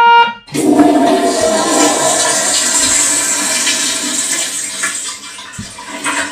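A held trumpet note cuts off just after the start, then a toilet flushes: a loud rush of water lasting about five seconds that thins out near the end.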